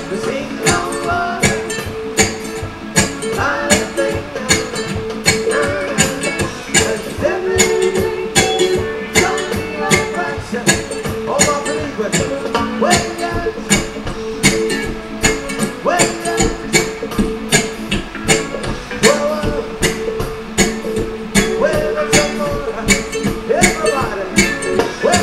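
Electric cigar box ukulele strummed in a steady, even rhythm, the strokes falling evenly through the whole passage.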